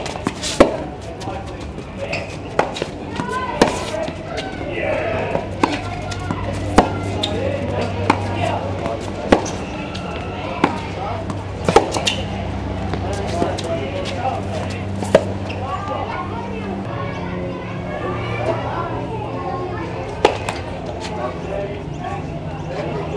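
Tennis balls struck by racquets and bouncing on a hard court during a rally: sharp pops that come irregularly, about one to two seconds apart.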